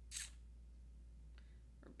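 Quiet steady low electrical hum, broken about a quarter second in by one brief sharp click.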